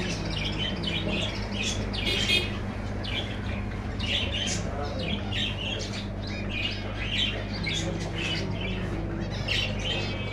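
A shopful of caged small parrots and finches (budgerigars, lovebirds) chattering and squawking in many short, overlapping calls, with a steady low hum underneath.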